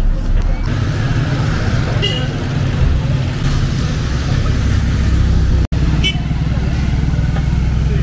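Street traffic with the steady low hum of motor vehicle engines, breaking off for an instant about two-thirds of the way through.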